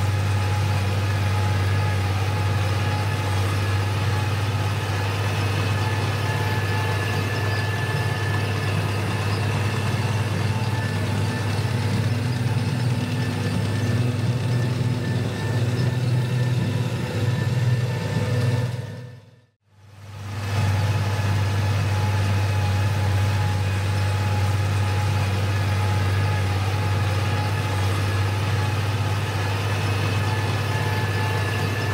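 Case IH 9330 four-wheel-drive tractor's diesel engine running steadily under load while it pulls a hay merger, with a low, even hum. It fades out briefly to silence about two-thirds of the way through, then comes back the same.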